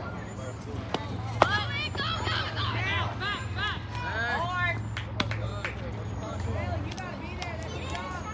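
A single sharp crack at home plate about a second and a half in, then spectators and players yelling and cheering over the play for several seconds.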